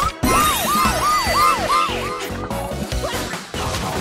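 Cartoon police-siren sound effect yelping up and down about five times in quick succession over upbeat children's music, just after a short crash at the start.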